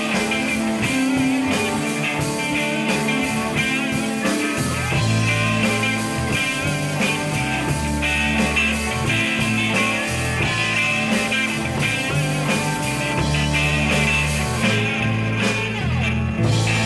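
Live blues-rock band playing: electric guitars, electric bass and drums, with a harmonica played cupped to a vocal microphone carrying sustained notes over the band.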